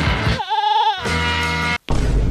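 A goat bleats once, a wavering call about half a second long, over background music with a beat. A steady held musical tone follows and breaks off shortly before the end.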